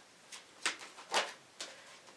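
Tarot cards being shuffled by hand: four short, soft card sounds, the strongest about two-thirds of a second and a little over a second in.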